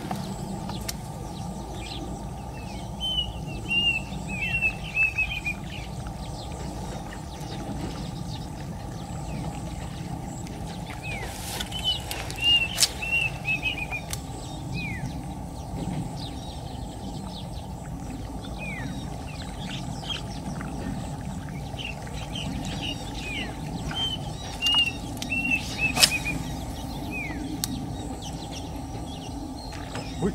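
Birds calling over steady low outdoor background noise: strings of quick high chirps and single downward-sliding notes in three bursts, with a few sharp clicks.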